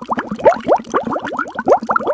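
A fast run of short rising bloops, about eight a second, like a cartoon bubbling-water sound effect.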